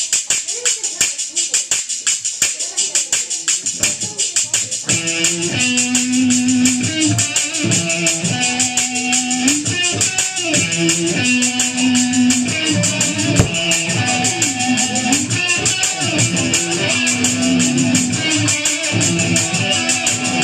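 Live drum-and-bass rock band playing: a fast, even beat of sharp percussion ticks, joined about five seconds in by a repeating guitar and bass riff that carries on over the beat.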